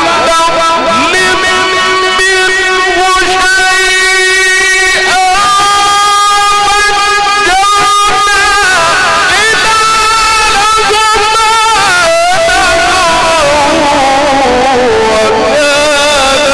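A male reciter chanting the Quran in the melodic mujawwad style, holding long sustained notes and breaking into fast wavering ornaments about eight seconds in and again near twelve seconds.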